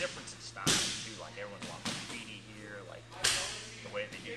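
Sharp smacks of strikes landing on gym striking equipment: a loud hit under a second in, a lighter one near two seconds and another loud one just past three seconds, over a man's voice.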